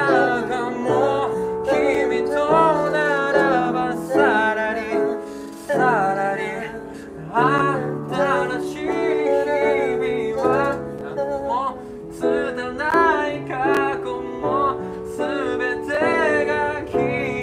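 A male singer singing a Japanese pop song to his own upright piano accompaniment, the sung phrases gliding over held piano chords with brief breaks between phrases.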